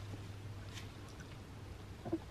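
A woman crying quietly, with soft wet breaths and mouth sounds, over a low steady hum.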